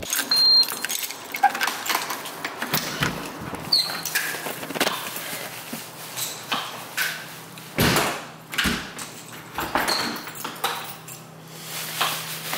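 Handling noise from a handheld camera rubbing against a cloth hoodie as its holder moves about: rustling with a string of sharp clicks and knocks. A steady low hum sits underneath from about three seconds in.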